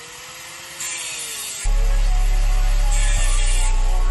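Handheld angle grinder running against steel suspension parts: a hissing grind whose pitch sags and rises as it bites. About a second and a half in, a loud, steady deep bass note from music comes in and dominates.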